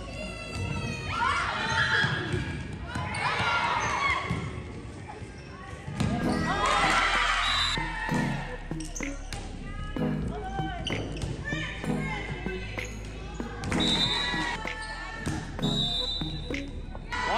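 Volleyball rally in a gymnasium: the ball is struck and bounces with sharp slaps and thuds, among shouting and cheering from players and spectators and a few short high squeaks.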